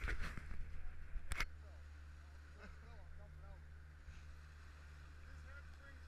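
Two sharp knocks on the boat, one right at the start and one about a second and a half in, over a steady low hum, with faint voices after.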